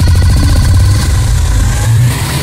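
Electronic club music with a heavy, sustained bass and a fast stuttering pulse, about a dozen beats a second, that thins out about a second in.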